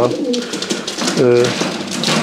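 Domestic pigeons cooing in the background, with a short drawn-out voiced hesitation from a man a little over a second in.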